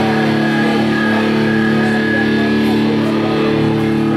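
Amplified electric guitar holding one chord through the amp, ringing steadily without being struck again.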